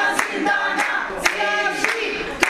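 A group of women singing together, clapping their hands in time about twice a second.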